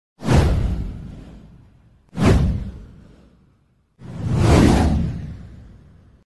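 Three whoosh sound effects of a title animation, about two seconds apart. The first two start suddenly and fade away; the third swells in more gradually before fading.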